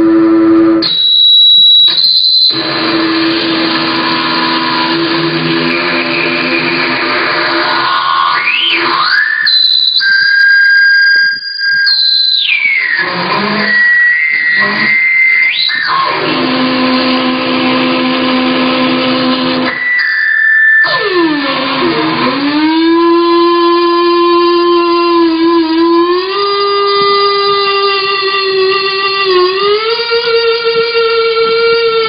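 Distorted seven-string electric guitar held in feedback by a homemade sustainer: a speaker driver on the guitar body, fed from the amplifier, is held over the strings. Long sustained notes alternate with shrill feedback squeals, some sliding in pitch as the speaker is moved. In the last third a note swoops down and then climbs in steps.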